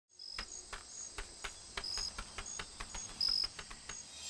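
Intro sound effect for an animated logo: a run of sharp clicks, about three to four a second and speeding up, mixed with short high-pitched chirps, like insect sounds.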